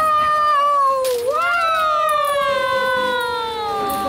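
A voice singing two long held notes, the second sliding slowly down in pitch over nearly three seconds.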